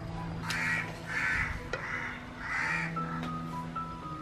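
A crow cawing about four times, harsh calls a little under a second apart, over quiet background music.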